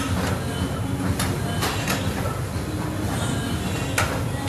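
Stationary exercise bike running under steady pedalling: a continuous low whir with irregular sharp clicks.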